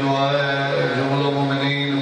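A man chanting a recitation in long held notes, amplified through a microphone, with short breaks between phrases.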